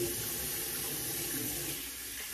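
Bathroom sink faucet running in a steady stream into the basin.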